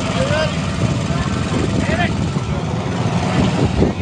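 Steady, loud rumbling outdoor noise with faint scattered voices of onlookers.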